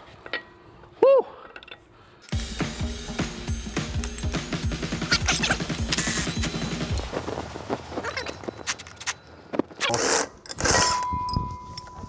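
A cordless Milwaukee power tool spins out a driveshaft flange bolt that was broken loose by hand first. It starts about two seconds in with a loud, fast rattling run of about five seconds, then lighter rattling and clinking of tool and bolt.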